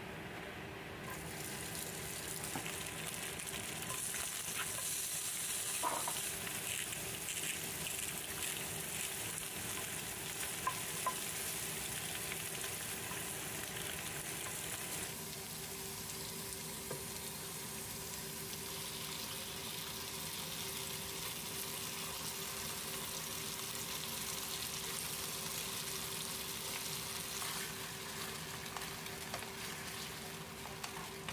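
Shrimp and sliced meat frying in oil in a nonstick frying pan: a steady sizzle, with a few sharp clicks of a utensil and a low steady hum underneath.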